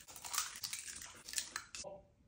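Eggs being cracked by hand and pulled open over a glass bowl: a few faint, irregular crackles of eggshell.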